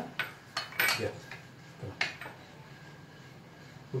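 A spoon clinking and scraping against bowls as fruit salad is dished out: a cluster of sharp taps in the first second and another about two seconds in.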